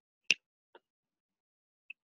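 Computer keyboard keystrokes: one sharp key click, then a much fainter one about half a second later.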